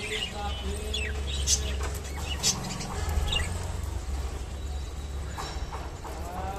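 Budgerigars giving scattered short chirps, with a short run of calls near the end, over a low steady hum.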